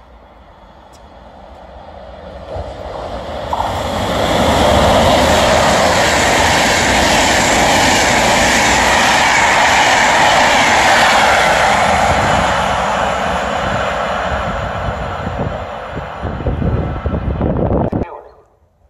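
Passenger train of Thello coaches passing through the station at speed: wheel-on-rail noise builds over the first few seconds as it approaches, holds as a loud steady rush while the coaches go by, then fades as the train draws away.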